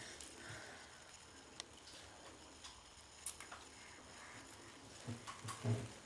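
Faint sounds of a toddler's toothbrush scrubbing at her teeth in the bath, with a few light clicks and a few soft sounds near the end.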